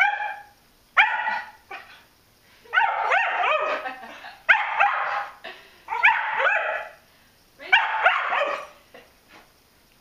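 Brittany spaniel barking in about six quick runs of barks, each a second or so long with short pauses between, at a foam puzzle mat that frightens it: fearful alarm barking.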